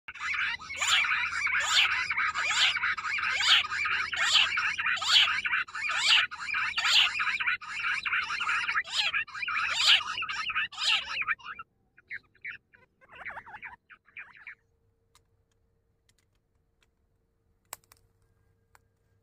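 Grey francolin calling: a loud, fast run of repeated rising call notes, then a few softer notes, stopping about two-thirds of the way through. A single sharp click near the end.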